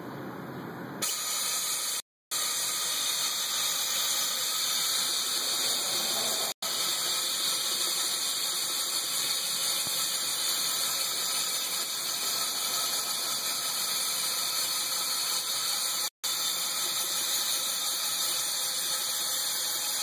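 Compressed air hissing steadily through a Harbor Freight powder coating cup gun as it sprays powder, starting about a second in. The hiss is broken by a few brief silent gaps.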